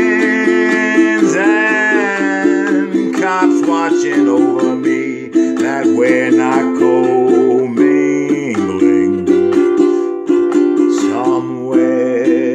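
Ukulele strummed in steady chords with a man singing along.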